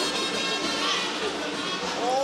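Video transition sting: a steady, noisy swoosh with music laid under a club-crest wipe.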